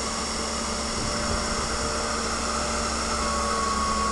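Desktop CNC router's spindle running steadily as it engraves a box mod's cover, a constant machine whir with a few steady tones in it; a higher steady tone comes in about three seconds in.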